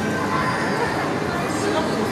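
Steady hubbub of many voices talking at once, blended into a loud, even background din with no single sound standing out.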